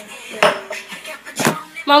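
Dishes and cutlery clattering at a kitchen sink: two sharp clanks about a second apart, the first followed by a brief ringing tone.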